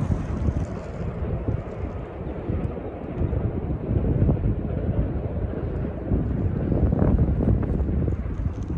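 Wind blowing across the microphone: an uneven low rumble that swells and eases, loudest about four and seven seconds in.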